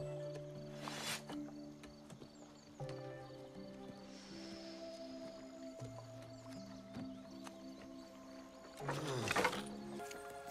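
Background score music of slow, held notes that step to a new pitch every second or so. There is a sharp hit about a second in, and a louder burst of noise with a falling low tone near the end.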